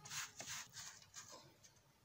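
Faint rustling of Ankara print fabric being smoothed and pressed by hand, a few soft strokes in the first second or so, then near silence.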